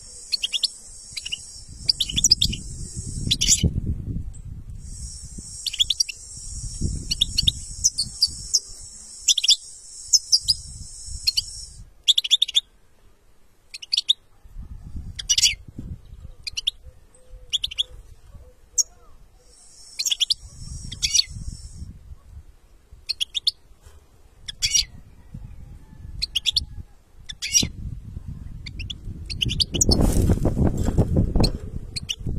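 Male European goldfinch singing a long, fast twittering song of short, sharp high notes.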